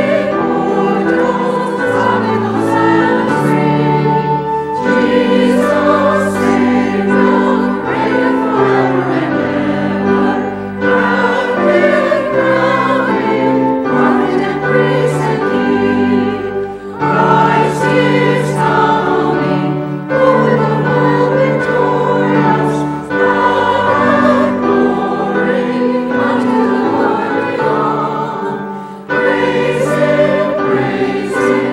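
A church choir singing a hymn with instrumental accompaniment, in long held phrases with brief breaks between lines.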